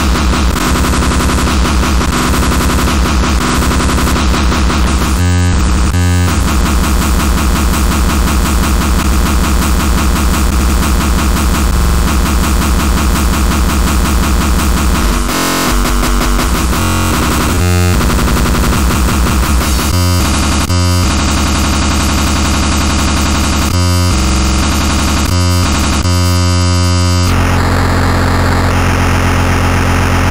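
Speedcore electronic music: a dense wall of heavily distorted noise over an extremely fast, machine-gun kick drum and heavy bass. It is loud, with a couple of brief breaks about five seconds in and again halfway, and the texture shifts near the end.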